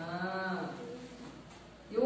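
A person's voice holding one long, low vowel for about a second, then fading away.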